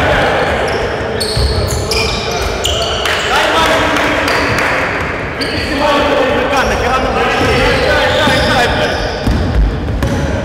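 Indoor basketball play: the ball bouncing on the court floor, sneakers squeaking in short high chirps, and players calling out, all echoing in a large hall.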